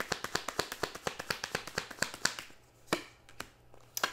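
A deck of tarot cards being shuffled by hand: a quick patter of card clicks, about ten a second, that stops about two and a half seconds in. It is followed by a few single taps of cards near the end.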